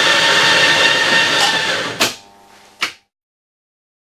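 Office coffee machine running with a loud, steady whirring hiss, which stops about two seconds in with a click, followed by another click.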